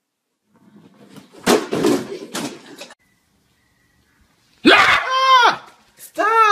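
A few knocks or bangs with some shuffling in the first half. Near the end comes a loud, high-pitched human scream whose pitch rises and falls, the kind of shriek a scare prank draws.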